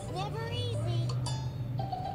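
Cartoon soundtrack heard from a TV speaker: short, high, gliding squeaky character voices over light music, with a steady low hum underneath.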